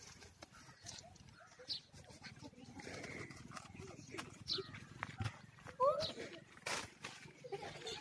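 Children's scattered wordless calls and squeals, imitating monkeys, with a couple of quick rising cries and a sharp knock about two-thirds of the way through.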